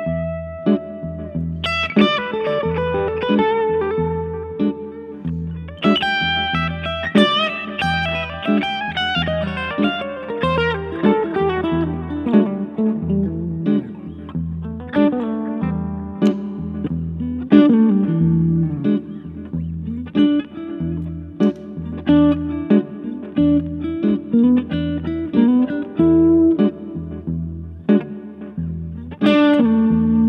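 2013 Gretsch White Falcon G6139CB centerblock hollow-body electric guitar played through a 1963 Fender Vibroverb amp: picked single-note lines and chords over a steady, repeating low backing part, with a long falling run about six seconds in.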